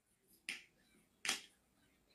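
Two faint, short clicks about a second apart, in a quiet gap between speech.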